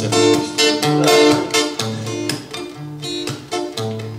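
Acoustic guitar strumming chords in a steady rhythm, the introduction to a song before the singing comes in.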